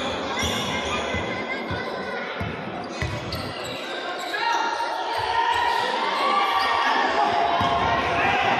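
A basketball being dribbled on a wooden gym floor: a run of irregular thuds, roughly two a second, echoing in a large hall. The dribbling thins out after about four seconds.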